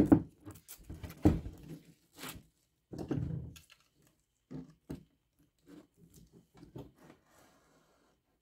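Utility knife cutting a strip of double-sided golf grip tape by hand, with handling of the tape: a string of short, irregular scrapes and taps, growing fainter in the second half.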